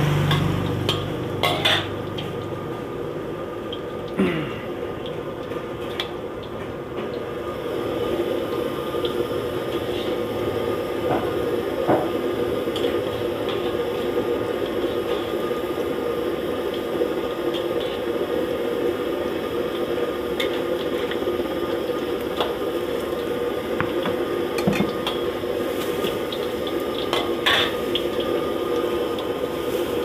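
Fu yung hai egg omelette deep-frying in a wok of hot oil, the oil sizzling steadily. A metal spatula scrapes and knocks against the wok a few times.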